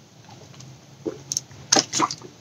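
A man drinking from a carton: a quiet first second, then a few short, sharp swallowing and mouth sounds, the loudest just before the end.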